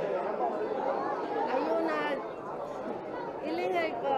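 Indistinct chatter, with several voices talking at once.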